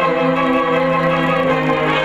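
A middle-school concert band playing sustained, held chords, which move to new chords about a second and a half in.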